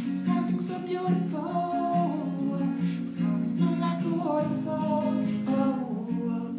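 Acoustic guitar strummed and picked, with a man's voice singing along in held, sliding notes.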